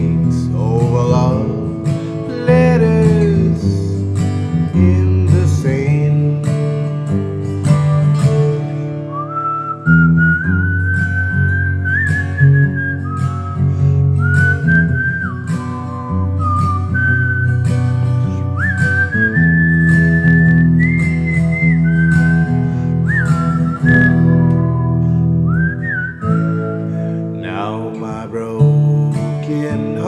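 Acoustic guitar strumming steady chords, with a man whistling the melody over it from about a third of the way in until near the end, the whistle sliding up into each note.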